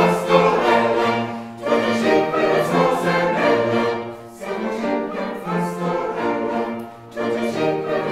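A mixed choir sings a five-part madrigal in sustained chordal phrases, with short breaks between phrases every two to three seconds.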